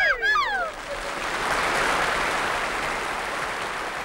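A couple of sliding vocal whoops right at the start, then audience applause that rises and slowly fades away.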